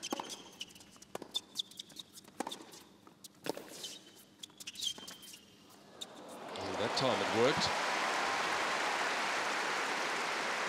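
Tennis rally on a hard court: racket strikes on the ball and shoe squeaks, irregular, for about five seconds. About six and a half seconds in the point ends and the arena crowd breaks into loud cheering and applause, with a brief shout rising over it.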